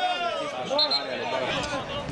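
A long drawn-out shout that ends about half a second in, followed by several men's voices calling over one another.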